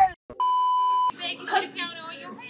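A single steady electronic censor bleep, about two-thirds of a second long, dubbed over a word and cut off sharply, followed at once by people talking.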